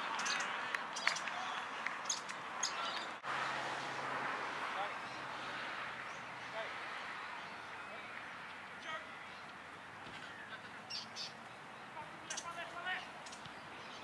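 Open-field ambience of distant indistinct voices calling, with bird calls and a few sharp knocks scattered through it. The sound breaks off for an instant about three seconds in.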